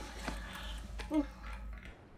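A low steady hum with a short, soft vocal sound about a second in; the hum cuts off just before the end.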